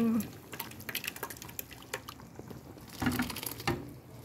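Thick blended corn mixture being poured from a plastic blender jug into a pot of chicken broth: a soft pouring with small splashes and drips, louder for a moment about three seconds in.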